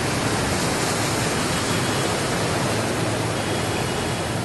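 Steady rushing noise with no distinct events in it.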